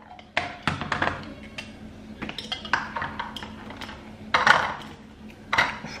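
Kitchen utensils and a plastic container being handled on a worktop: scattered knocks and clinks, the loudest about four and a half seconds in and again near the end.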